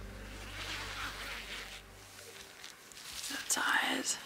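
Tent door zip being pulled open, with rasping and rustling of the nylon tent fabric, and a brief soft voice near the end.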